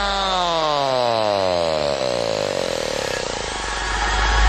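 A buzzy synthesizer note with many overtones sliding steadily down in pitch over about four seconds, above a held deep bass note: a pitch-dive effect in a pop song's backing track.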